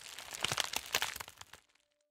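A dense burst of crackling and snapping that swells and then stops abruptly, about one and a half seconds in.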